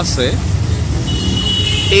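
Road traffic with a steady engine rumble, and a vehicle horn sounding a steady high note from about halfway through.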